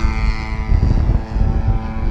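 FPV racing quadcopter's electric motors and propellers whining in flight: a steady pitched hum, with a higher whine that drops in pitch during the first second. Heavy wind rumble on the microphone underneath.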